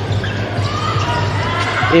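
Basketball game sound in an indoor arena: crowd voices and a basketball bouncing on the court, over a steady low hum.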